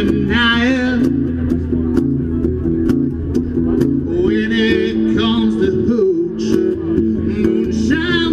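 Live solo country song: a guitar played in a steady rhythm through a PA, its strokes coming about twice a second. A man's sung line trails off in the first second, and singing returns from about four seconds in.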